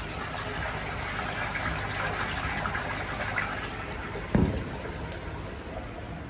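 Water trickling and splashing steadily in a running fish quarantine tank. A single low thump about four seconds in.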